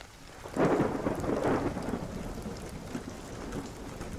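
Rain falling with a roll of thunder that swells about half a second in and slowly dies away.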